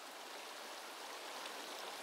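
Shallow stream running over rocks: a steady, faint rush of water.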